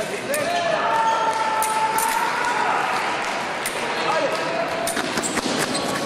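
Foil bout on a fencing piste: fencers' shoes squeaking and repeated sharp stamps and clicks of footwork and blades, over a hum of voices in the hall.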